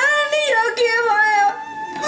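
A woman wailing in long, wavering cries that bend up and down in pitch, a staged lament of grief; the cry falls away about one and a half seconds in.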